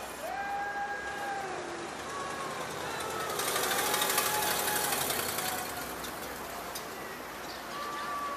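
A vehicle passing on the street, its tyre and engine noise swelling to a peak about four seconds in and then fading, over distant voices calling out.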